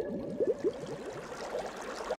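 Underwater bubbling sound effect: a quick run of small rising bubble blips, densest in the first second and thinning out after.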